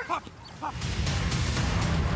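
A protection-trained guard dog barks a couple of times as it goes into a training attack. Then background music with a steady beat comes in under a second in and takes over.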